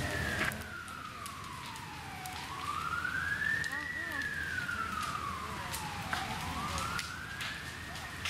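An emergency vehicle siren in a slow wail, its pitch sweeping down and back up about every four seconds, with scattered crackles and pops from the open fire.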